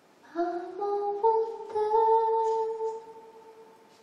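A woman singing a short, slow phrase that rises through a few notes and settles on one long held note, which fades away about three seconds in.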